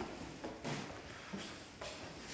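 Footsteps climbing wooden stairs: several soft footfalls, irregularly spaced about half a second apart.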